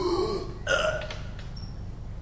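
Two short wordless vocal sounds from a man, the first sliding down in pitch and the second a brief burst under a second in.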